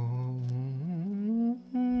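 Recorded music playing back: a low hummed voice holds a steady note over a steady drone, slides up about an octave about halfway through, breaks off briefly, then holds a new note.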